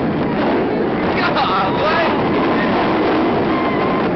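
Inverted roller coaster heard from the riding train: a loud, steady rush of wind and train noise as it runs through an inversion, with short rising and falling yells from riders now and then.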